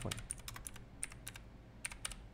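Computer keyboard keys clicking as a phone number is typed: a quick run of keystrokes over the first second or so, a short pause, then a couple more near the end.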